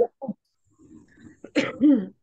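A person coughing over a video call: two short coughs at the start, then a louder cough or throat-clearing near the end.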